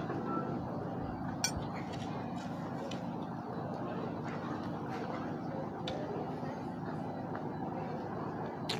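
Spoon clinking lightly against a plate a few times as someone eats, over a low, steady outdoor background hum.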